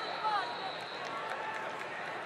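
Wrestling shoes squeaking in short, sharp chirps on the mat as the wrestlers scramble and shoot, over a steady murmur of arena crowd noise.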